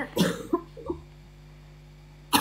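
A woman coughs near the start, followed by a couple of shorter throat sounds; the second half holds only a low steady hum.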